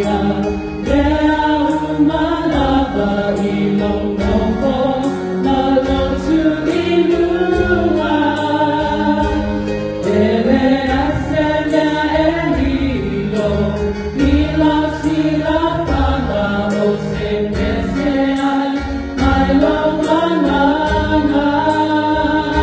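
A small group of women singing a hymn together into microphones, their voices in harmony over keyboard accompaniment with steady low bass notes and a light regular beat.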